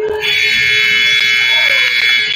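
Gymnasium scoreboard horn sounding one long, steady blare as the game clock hits zero, signalling the end of the first period.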